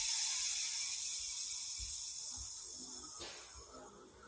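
A high-pitched hiss that starts suddenly and slowly fades, dying away after about three seconds.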